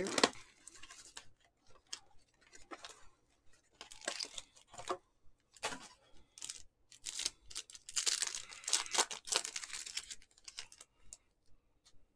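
The foil wrapper of a Panini Donruss Choice basketball card pack being torn open and crinkled by hand, in irregular crackling bursts that are busiest about two-thirds of the way through.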